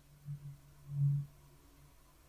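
A faint, muffled low voice: a short hum or murmur in a few brief swells, the longest about a second in.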